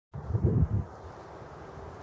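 Wind buffeting the microphone in a few low rumbling gusts for under a second, then a faint steady outdoor hiss.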